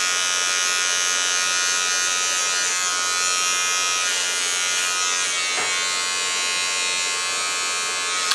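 Wahl G-Whiz battery-operated hair trimmer buzzing steadily as it is run along the forehead hairline, edging in a lineup.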